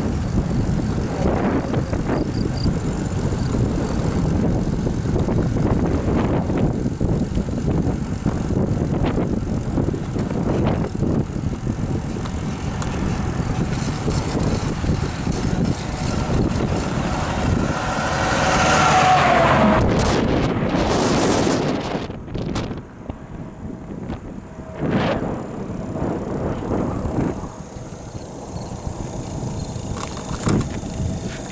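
Wind rushing over the microphone of a handlebar-mounted camera on a road bike being ridden at speed. About two-thirds of the way through, a passing vehicle grows loud and falls in pitch as it goes by, after which the wind noise drops and becomes more uneven.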